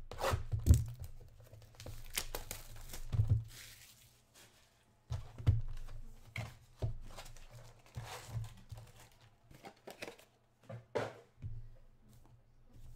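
Plastic wrap being torn off and crinkled as a sealed trading-card hobby box is opened and its foil packs are pulled out. Short bursts of tearing and crackling come with small knocks of cardboard, broken by a couple of brief pauses.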